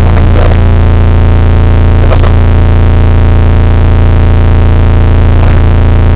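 A loud, steady electrical buzz: a low hum with a harsh stack of overtones that swamps the studio microphones, an audio fault on the broadcast line.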